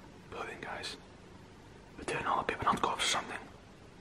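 A man whispering two short phrases close to the microphone, the second starting about two seconds in and lasting a little longer.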